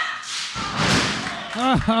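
A wrestler's body hits the ring mat with a heavy thud about half a second in, landing from a top-rope hurricanrana, and a short rush of noise follows the impact.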